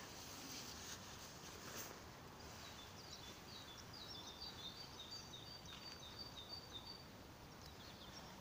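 Faint bird song: a run of short, high chirps repeated quickly for several seconds, starting a couple of seconds in, over a quiet background hiss.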